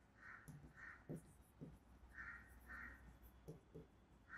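Near silence, with faint bird calls in caw-like runs of two or three, about half a second apart, and soft marker strokes on a whiteboard.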